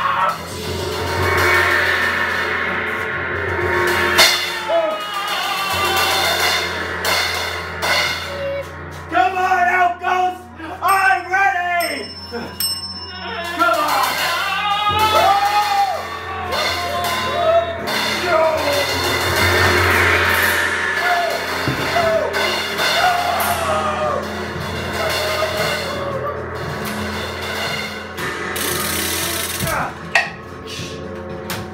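Background music with a singing voice.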